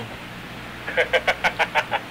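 A person laughing over a telephone line, a quick run of short 'ha's beginning about halfway in.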